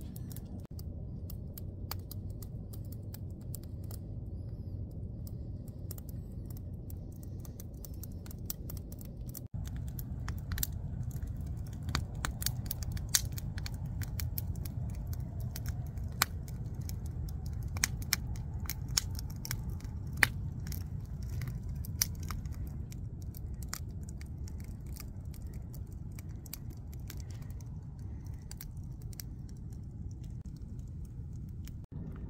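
Wood campfire crackling, with sharp pops scattered throughout and most frequent in the middle, over a steady low rumble.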